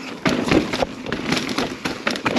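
Mountain bike riding down a rock garden: an irregular, rapid clatter of knocks as the tyres hit rocks and the bike rattles over them.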